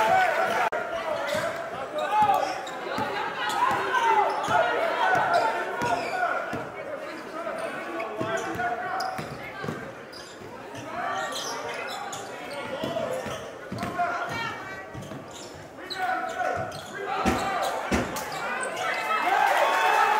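Game sound in a gymnasium: a basketball bouncing on the hardwood floor in a run of sharp knocks, under a steady mix of players' and spectators' voices calling out.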